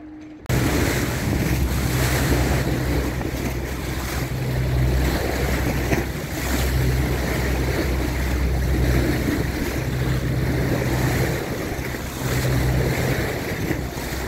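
Water rushing and churning along the hull of a moving fishing boat, with wind buffeting the microphone and the boat's engine droning low underneath. It starts suddenly about half a second in.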